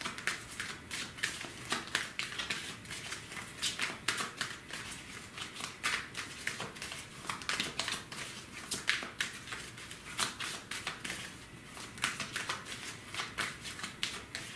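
A tarot deck shuffled by hand, the cards flicking and slapping against each other in a quick, irregular run of soft clicks, easing off briefly about three-quarters of the way through.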